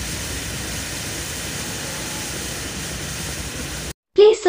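Copper wire reacting in piranha solution (sulfuric acid and hydrogen peroxide), the solution fizzing and bubbling in a steady hiss, played fast-forward. This is the exothermic reaction dissolving the copper to form copper sulfate. The sound cuts off abruptly near the end.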